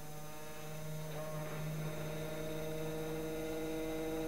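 Electric motor of a hydraulic filter pump running with a steady hum, pumping hydraulic oil out of the tank. The hum grows slightly louder about a second in.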